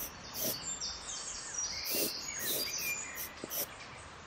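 Charcoal pencil sketching on card: a row of short, scratchy strokes, about two a second, with a few faint, high chirping tones in the middle stretch.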